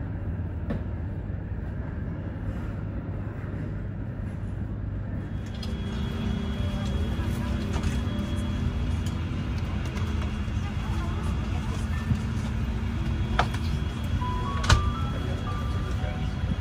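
Steady hum of a terminal view, then from about five seconds in the steady hum of an Airbus A350-900 cabin's air system at the gate, with soft music, faint passenger voices and a few light clicks; a short run of rising tones sounds near the end.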